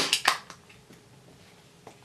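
A few small clicks from a metal camera lens being handled in the hands, right at the start, then little more than room tone with one faint click near the end.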